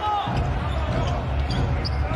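A basketball being dribbled on a hardwood court, over a steady low arena rumble.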